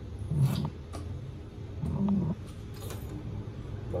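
Plastic mustard squeeze bottle sputtering and squelching as it is squeezed, in two short bursts about a second and a half apart.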